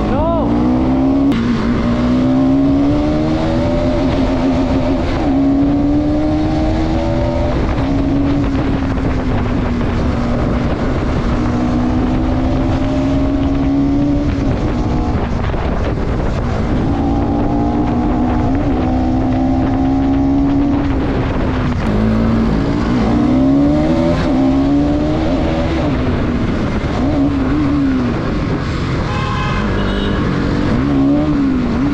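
Motorcycle engine under hard acceleration, its pitch climbing in steps and dropping at each gear change, then rising and falling several times in quick succession over the last several seconds. A steady rush of wind noise runs underneath.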